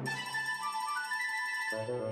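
Opening theme music: a short, high melody played alone, the lower instruments dropping out, then coming back in near the end.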